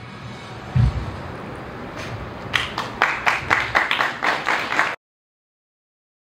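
A fading wash of sound and a single low thump about a second in, then a few people clapping, scattered and uneven, from about two and a half seconds in until the sound cuts off suddenly.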